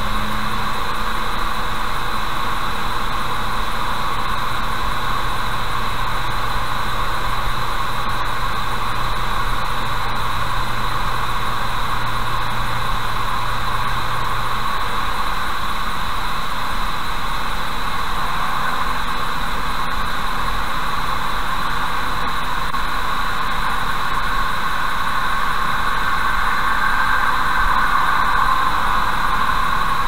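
Steady road noise of a car driving at about 60–70 km/h, heard from inside the cabin through a dashcam microphone: an even tyre-and-wind rush, with a faint low hum that drops away about halfway through.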